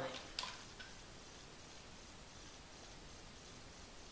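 Quiet room tone: a steady faint hiss, with a brief soft sound about half a second in.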